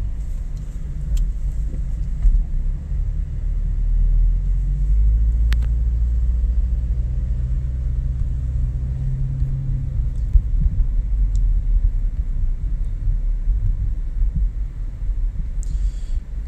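Low, steady road rumble of a moving car, heard from inside the cabin, with a few brief clicks.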